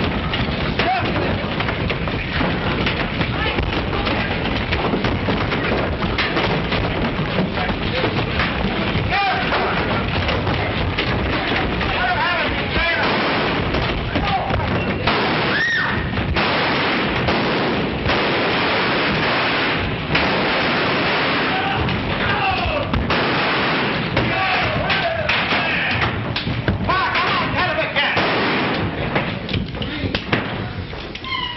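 A fistfight brawl: men yelling and shouting over thuds of blows and crashes, with a steady rushing noise throughout.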